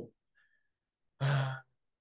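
Near silence, broken about a second in by one brief, flat-pitched hesitation sound from a man, a drawn-out "uh" in a pause of conversation.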